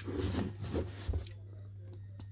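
Cardboard box in shrink wrap being turned over in the hands: a few light rubs and clicks in the first second, then quiet over a steady low hum.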